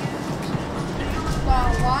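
Steady low background rumble of shop and street ambience. A voice says 'one' near the end.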